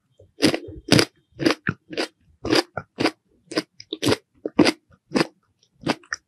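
Close-miked chewing of a crunchy, crisp snack: a bite, then a steady rhythm of sharp crunches, about two a second.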